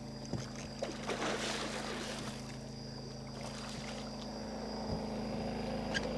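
A boat's steady low hum, with a few faint sharp clicks and some faint splashing as an arrow-shot snakehead struggles on the bowfishing line at the surface.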